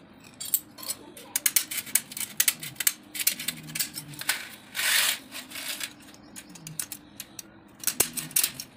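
Scissors snipping and clicking on a strip of steel wire mesh, with the mesh sheet rattling as it is handled and one brief rasp about five seconds in.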